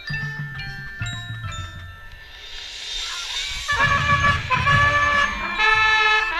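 Marching band playing its halftime show: front-ensemble mallet keyboards ring out struck notes, a cymbal swells up, and a little past halfway the full band comes in loud with sustained chords over low drums.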